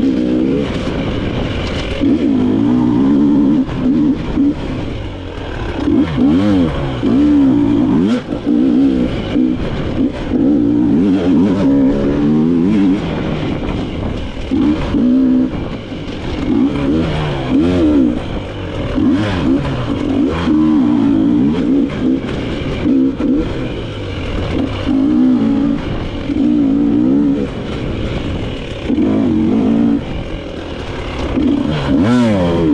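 Dirt bike engine under way on tight singletrack, revving up and falling back every second or two as the throttle is worked, with frequent short knocks and clatter from the bike over bumps.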